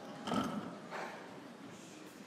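Piano bench creaking and knocking as the pianist sits down and shifts on it, with two short sounds, the louder about half a second in and another about a second in.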